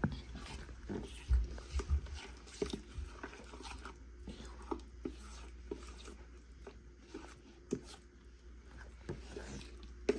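A plastic spatula and fingers stirring thick, wet puppy mush in a plate: irregular soft squelches, scrapes and clicks, with a few low thumps about one and a half to two seconds in.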